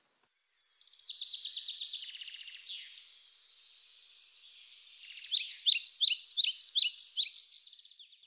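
Birds singing: a fast high trill in the first few seconds, then a quick run of repeated high chirps from about five seconds in.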